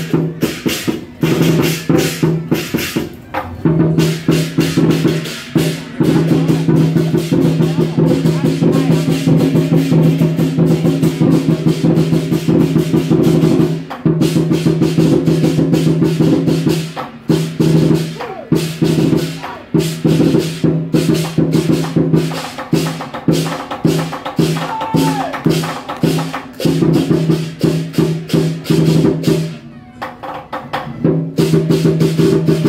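Southern Chinese lion dance percussion: a large lion drum beaten in fast, driving rolls with clashing cymbals and a ringing gong, the rhythm breaking off briefly a few times in the second half.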